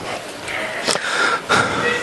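Paper pages of textbooks rustling and being leafed through by a roomful of students, with shuffling and two sharp knocks about midway. A faint steady whistle-like tone comes in about one and a half seconds in.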